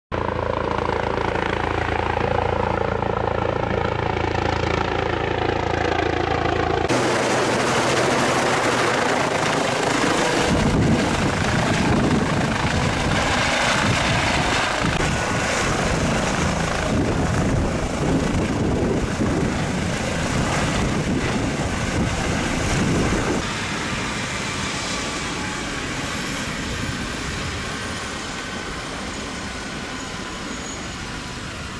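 Air ambulance helicopter running loud and steady, first passing overhead with a steady engine tone, then close by as it lands, with a pulsing beat of the rotor blades underneath. About 23 seconds in it drops quieter and a high turbine whine slowly falls in pitch as the helicopter sits on the pad with its rotors still turning.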